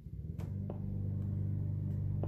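A steady low hum made of several held tones, setting in about half a second in, with a few faint ticks over it.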